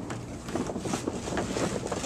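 Heavy reinforced-polyethylene pond liner (BTL PPL-24) crinkling and rustling in quick, irregular crackles as it is pulled and pushed into place.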